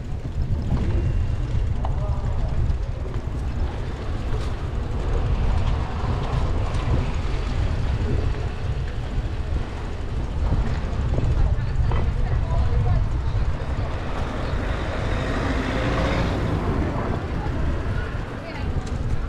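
Steady low wind rumble on the microphone of a moving bicycle, with faint voices of passers-by.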